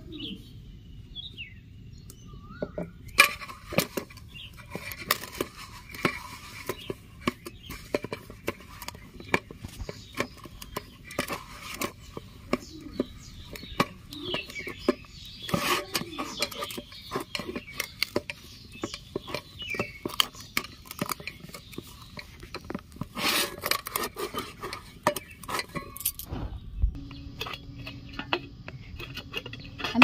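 Hand kneading potato-and-flour dough in a stainless steel bowl: irregular clicks and knocks of the hand and dough against the metal, with soft squishing between them.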